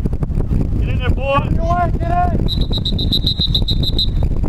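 A referee's pea whistle blown about two and a half seconds in, a high trilled blast lasting about a second and a half, likely stopping the play. Before it, voices shout, over a steady low rumble of wind on the microphone.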